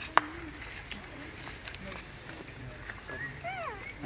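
A macaque's high calls near the end, several short rises and falls in pitch in quick succession, after a single sharp click about a quarter second in.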